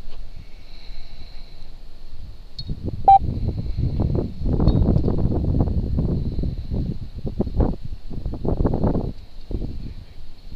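Irregular rumbling and rustling noise on a body-worn camera's microphone, heaviest in the second half, with a brief tone about three seconds in and a faint steady high whine throughout.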